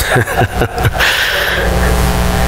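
A man laughing in a few short bursts that fall in pitch, all within the first second, followed by a steady low hum.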